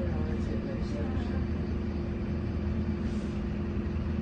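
Optare Solo M880 bus engine running, heard from inside the passenger saloon as a steady low drone with a constant hum.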